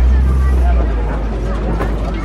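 Safari truck driving along on its ride route, its engine and running gear making a steady low rumble that is strongest in the first second, with faint voices over it.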